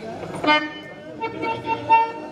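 Harmonium coming in suddenly about half a second in and holding a chord of steady reed notes.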